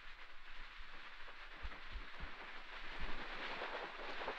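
Quiet hall room tone: a faint steady hiss with several soft, low thumps picked up through a handheld microphone as the person holding it walks.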